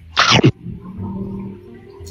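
A man eating toasted bread close to the microphone: two short, loud rushing mouth or breath sounds about two seconds apart, with faint background music between them.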